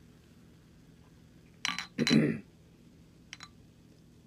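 Glassware clinking and knocking on a hard surface: a sharp clink about one and a half seconds in, then a louder knock, and a faint tick near the end.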